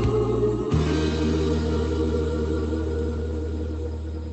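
Recorded gospel hymn ending on a long sung 'ooh' over a held chord, which starts with a final hit about a second in and then slowly fades out.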